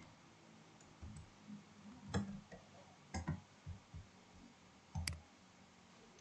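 Faint, irregular clicks of a computer keyboard and mouse as a label is typed and the page is scrolled, about a dozen light clicks with a sharper one about five seconds in.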